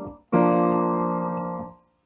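A left-hand piano chord struck about a third of a second in, held while it slowly fades, then released and stopping short shortly before the end.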